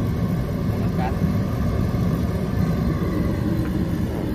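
Kerosene-fired forced-air heater running, its electric fan and kerosene burner making a steady, low-pitched rushing noise that holds an even level throughout.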